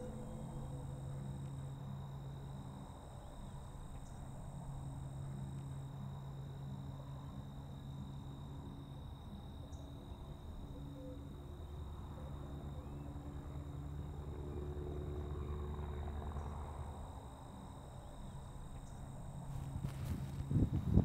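Faint outdoor ambience: a steady low hum with thin, steady high-pitched tones over it, and a low rumble that swells in the middle and fades a few seconds before the end.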